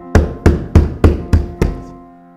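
A hand knocking on a closed door: six loud, evenly spaced knocks, about three a second, over soft piano music.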